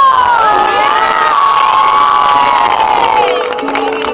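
A crowd of children screaming and cheering together, loud for about three seconds, then tailing off.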